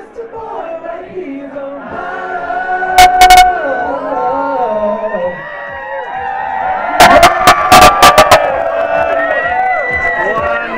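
Several voices singing together into handheld microphones, with long held notes over crowd noise. Loud sharp cracks right at the recording microphone cut through, a few about three seconds in and a quick run of about eight around seven to eight seconds in.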